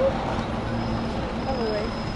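City street ambience: steady road traffic noise from the cars on the adjacent road, with an indistinct voice of a passer-by about one and a half seconds in.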